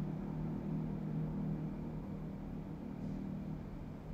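A steady low hum with a faint hiss over it, room background noise picked up by the microphone, easing off slightly over the few seconds.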